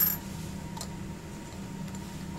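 A copper penny dropped into a small glass jar: one sharp clink at the start, then a fainter tick just under a second later, over a steady low hum.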